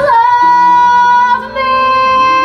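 A woman's voice belting a sustained high C5, held steady with a brief break about a second and a half in before it comes back. Quieter accompaniment sits beneath and changes chord twice.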